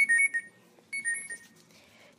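A short electronic ringing sound effect, two high tones trilling together, played twice about a second apart.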